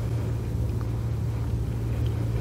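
A steady low hum with no other clear sound: the background room tone of an empty sanctuary.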